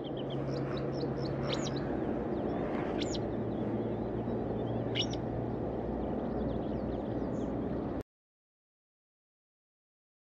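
Male white-spotted bluethroat singing: a few short, high, sharp notes at intervals, over a loud, steady low rumble with a hum. The sound cuts off suddenly about eight seconds in.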